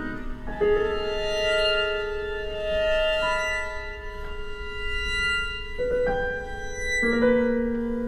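Piano quintet, a string quartet with piano, playing long held notes. New chords enter about half a second in and again near six and seven seconds.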